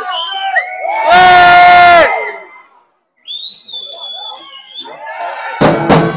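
Performers and crowd shouting between tunes: one very loud held shout about a second in, a high whistle near the middle, and a burst of loud shouts near the end.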